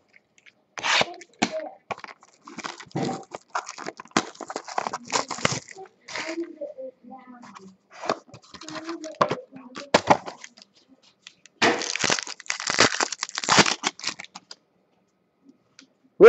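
A sealed trading card box being torn open by hand: irregular ripping and crinkling of its plastic wrap and cardboard, with the longest burst of tearing a few seconds before the end.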